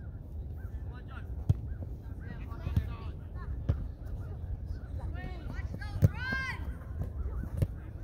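Youth soccer players and coaches shouting and calling across an outdoor field, with several sharp thuds of the soccer ball being kicked, the loudest about six seconds in. A steady low rumble runs underneath.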